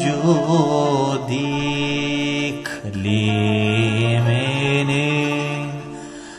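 A man singing a Turkish classical song in makam Nihavend, holding long drawn-out notes without words: a wavering, ornamented passage first, then sustained tones with a short break about three seconds in, fading near the end.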